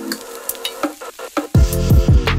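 Meat sizzling as it fries in a pan, with a few light clicks of utensils, under faint music. About one and a half seconds in, electronic music comes in loudly with deep falling bass notes.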